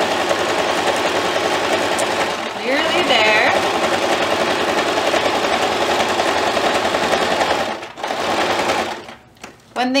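Singer electric sewing machine running steadily while top-stitching fabric. It pauses briefly about eight seconds in, runs again for a moment, and stops about a second before the end.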